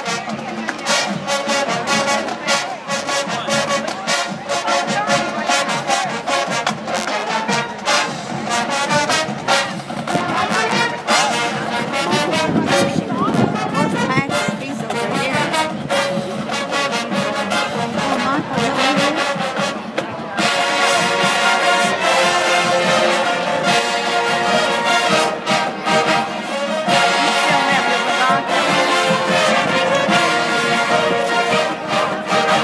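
High school marching band playing live on the field: massed brass over percussion. About 20 s in, the brass swells into louder, long held chords.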